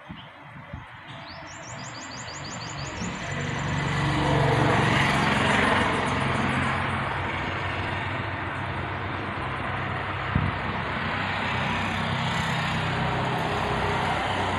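A motor vehicle's engine and tyres on a nearby road, a low hum that builds over the first few seconds, peaks near the middle and then carries on steadily.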